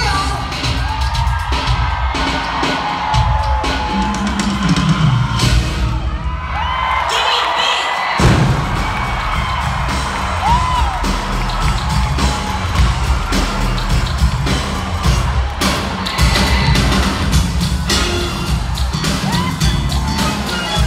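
Live dance-pop concert music over a large hall's sound system, recorded from the audience: a heavy bass beat that thins out for a couple of seconds and comes back hard about eight seconds in. Fans whoop and cheer over the music.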